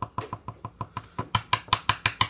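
A pen tapped rapidly against a desk, about eight taps a second, the taps getting louder and sharper in the second half.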